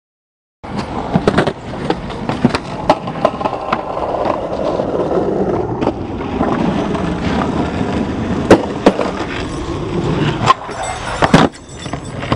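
Skateboard wheels rolling on concrete, starting about half a second in, with repeated sharp clacks of the board popping and landing during flip tricks; the loudest clacks come near the end.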